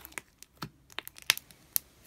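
Foamy glitter slime squeezed and poked by fingers, giving a string of sharp, irregular crackling pops, the loudest about a second and a half in.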